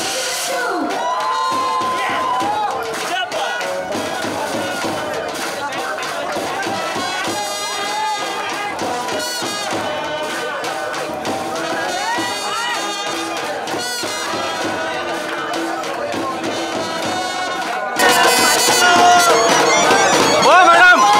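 A small live band of trumpet, clarinet and drums playing, with crowd voices and cheering mixed in. It gets louder near the end.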